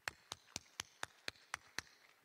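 One person clapping faintly: eight sharp, even claps at about four a second.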